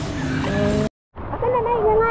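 Music with long held notes, cut off abruptly at an edit with a moment of silence just under a second in, followed by a child's high, wavering voice.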